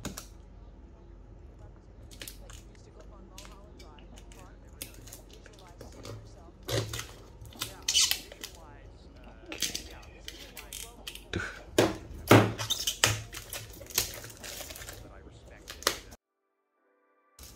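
Clear plastic shrink-wrap being slit with a snap-off box cutter and peeled off a cardboard product box: crinkling and sharp crackles, sparse at first and coming thick and loud in the second half, with clicks from the cutter's sliding blade.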